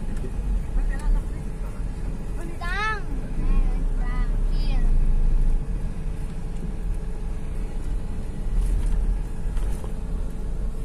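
Steady low rumble of a van's engine and road noise heard from inside the passenger cabin, with a faint steady hum over it. A few short, high voice calls rise and fall about three to five seconds in.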